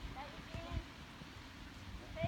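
Faint voices calling across an outdoor soccer field, over a steady low rumble, with a soft thump a little under a second in.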